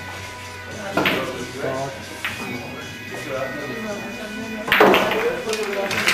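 Background music and voices in a billiard room, broken by a few sharp clicks of pool balls striking, the loudest near the end.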